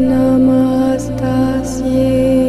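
Devotional Sanskrit mantra chant to the Divine Mother, set to music: a voice holds long, steady notes over a continuous low drone, with soft 's'-like consonants about one second and 1.7 seconds in.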